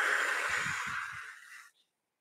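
Rustling hiss of hands brushing through long hair and against clothing, lasting about a second and a half and fading out, with a few soft thumps.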